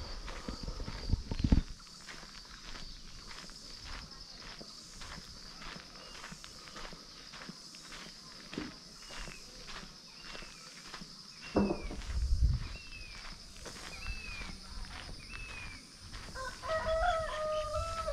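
Footsteps on a dirt path with a steady high-pitched buzz behind them. A bird gives short falling chirps about once a second through the middle. Near the end a rooster crows.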